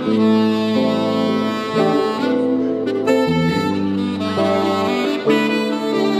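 Saxophone playing a jazz melody live in long held notes that change pitch every second or so, over sustained low accompaniment.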